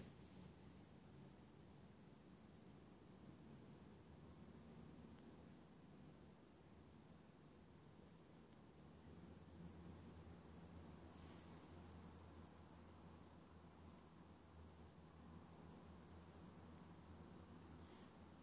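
Near silence: faint steady background with a low hum.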